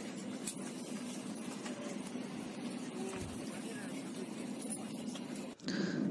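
Steady hum and hiss of an airliner cabin waiting for take-off, with faint murmur of passengers' voices. It cuts off suddenly near the end.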